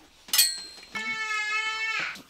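A brief sharp clink, then a man's voice sliding up into a high, steady held note that lasts about a second.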